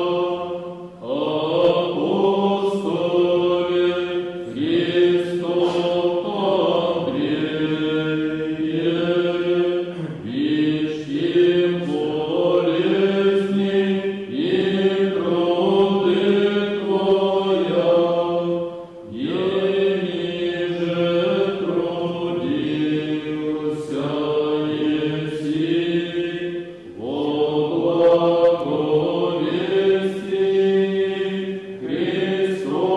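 Orthodox liturgical chant: voices singing long held notes in slow phrases, with brief pauses between phrases.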